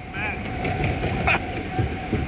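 Continuous low mechanical rumble of a loaded flume-ride boat being carried up the ride's chute, with a faint steady hum and wind on the microphone. Brief laughter or voices near the start, and a single sharp knock about a second in.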